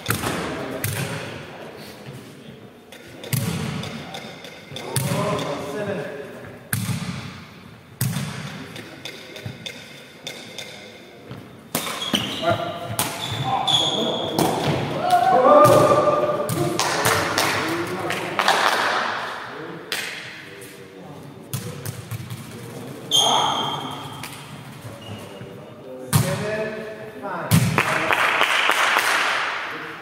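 Sepak takraw play in a reverberant sports hall: a series of sharp thuds as the ball is kicked and hits the floor, at irregular intervals. Players' voices and shouted calls come in between, loudest around the middle and near the end.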